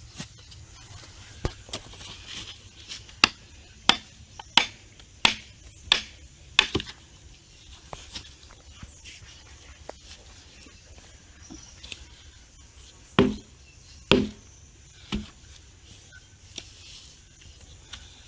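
Wood-on-wood knocks from a home-made log mallet being struck as its handle is knocked out of the head: about seven sharp strokes in quick succession, then after a pause three heavier, deeper thuds.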